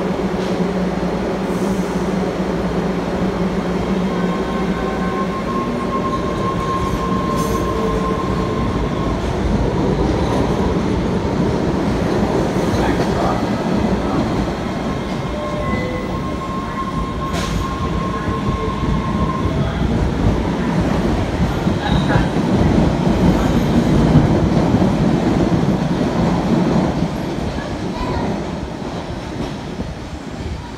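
MBTA Red Line subway train running through the underground station, its motors and wheels on the rails, with brief high whines at times. It is loudest about three quarters of the way through and fades near the end.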